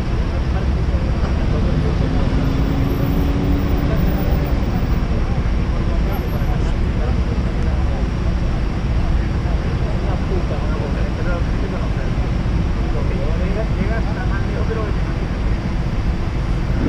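Steady city traffic noise at a busy intersection, a continuous low rumble of vehicles with indistinct voices of people passing by.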